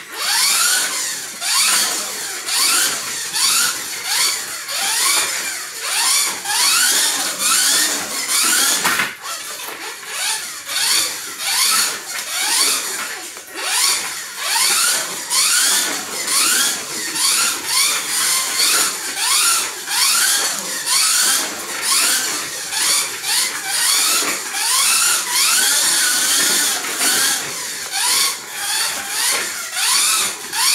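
Kyosho Mini-Z RC car's small electric motor whining through its gears, the pitch sweeping up again and again in short bursts as the car is throttled out of corners and along the short straights.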